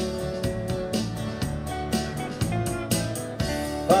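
Live band playing an instrumental stretch between vocal lines: strummed acoustic guitars over bass and drums keeping a steady beat.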